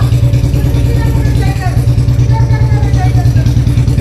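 Motorcycle engine idling steadily with an even, rapid pulse.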